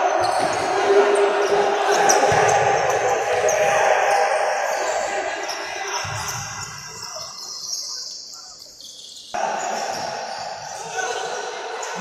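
Live sound of a futsal game in an echoing sports hall: ball kicks and bounces and players' feet on the wooden court, with players' voices. It fades in the middle and comes back abruptly about nine seconds in.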